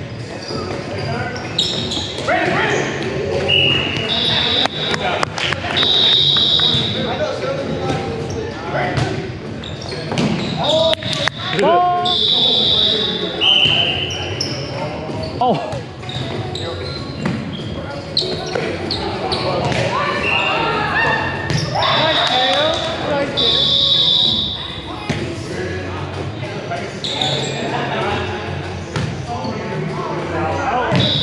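Indoor volleyball in an echoing gym: players' voices and calls across the hall, sharp smacks of the ball being hit and bouncing on the hardwood floor, and repeated brief high-pitched squeaks.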